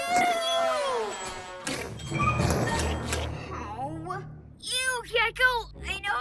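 Cartoon soundtrack: a long falling cry, then a whooshing rush with a low rumble and a few sharp hits, then short vocal exclamations near the end, over background music.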